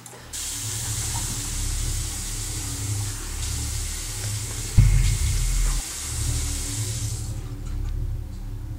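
Bathroom sink tap running as someone washes her face, the water shut off near the end. Under it a low droning music bed, with one deep boom about five seconds in.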